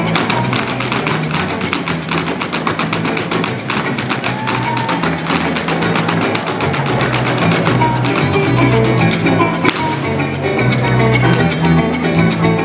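Live joropo music from a llanero band led by a harp, an instrumental passage with a fast, steady beat.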